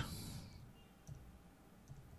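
A couple of faint clicks of computer keyboard keys being typed, over quiet room tone.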